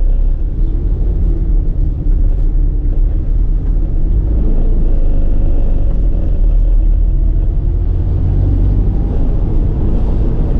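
Car heard from inside the cabin while being driven slowly: a steady low rumble of engine and road noise, with a faint engine tone that rises and falls in pitch.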